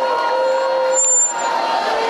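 Many voices of a congregation crying out and praying aloud together, with one voice holding a long cry about halfway through and a brief high whistle just after it.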